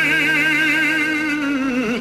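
A male singer in classical, operatic style holds one long note with a wide, even vibrato, over a steady low accompaniment note; the note falls away near the end.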